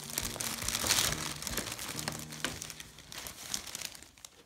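Plastic gift bag and tissue paper crinkling and rustling as hands rummage through them, busiest about a second in and thinning out toward the end.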